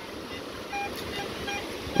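Shallow water running over a rocky bed: a steady, even wash of sound, with a few faint short tones near the middle.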